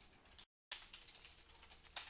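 Faint computer keyboard typing: a few quick, soft key clicks, broken by a moment of dead silence about half a second in.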